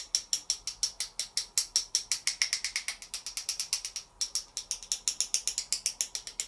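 Rapid, even clicking, about eight taps a second with a short break about four seconds in: a water-loaded fan brush being knocked against another brush handle to flick fine spatters of water onto a gel press.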